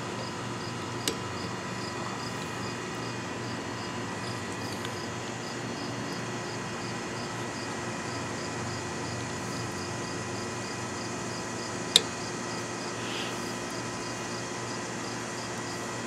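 Insects chirping in an even, rapid pulse over a steady outdoor background. A faint plastic click comes about a second in and a sharp, louder click about twelve seconds in as the wiper blade's plastic adapter is handled on the wiper arm.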